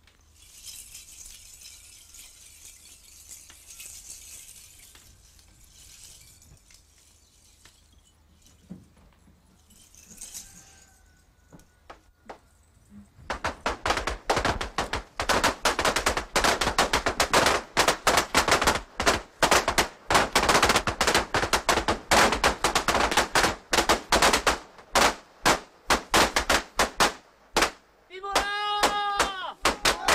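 A long, dense string of firecrackers going off in rapid, irregular cracks, several a second, starting about halfway through after a soft hiss.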